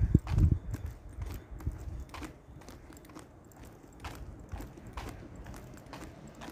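Footsteps of a person walking on a paved street: light, fairly regular knocks. There is a brief low rumble of wind or handling on the microphone at the start.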